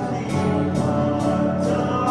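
Live church worship band playing a song on keyboards with singing voices and light drum-kit cymbal strokes.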